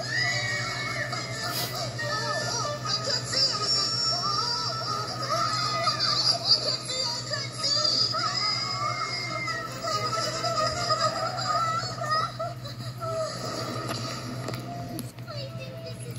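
Cartoon soundtrack music with a high, childlike character voice singing a melody with held notes, played back through a TV's speaker, over a steady low hum.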